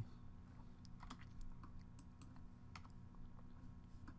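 Faint, irregular keystrokes on a computer keyboard: a scattered handful of light clicks as values are typed into a dialog box.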